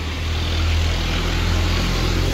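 A motor engine running, a low steady hum that builds slightly early on and then holds.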